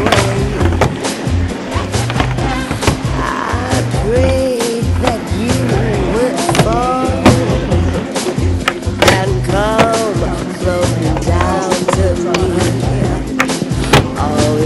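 Skateboard wheels rolling on a mini ramp, with several sharp clacks from the board and trucks; the loudest comes about seven seconds in. Music with singing and a steady bass line plays over it.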